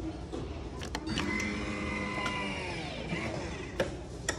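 Arm-in automatic blood pressure monitor starting a measurement: a couple of clicks, then its small motor runs for about two seconds and winds down in pitch, followed by another click near the end.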